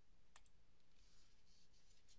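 A single faint computer mouse click about a third of a second in, selecting a menu item, then near silence with faint room tone.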